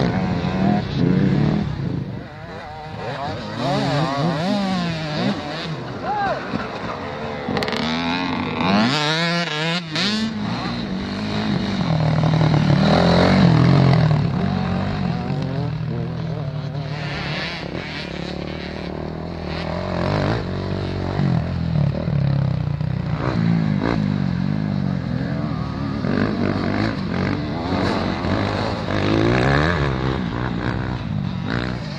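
Off-road dirt-bike engines revving up and down as the motorcycles race along the track, the pitch rising and falling with each throttle change. The engines are loudest about halfway through.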